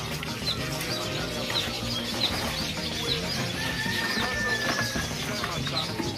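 Birds chirping: short high chirps repeating two or three times a second, with one long steady whistle through the middle.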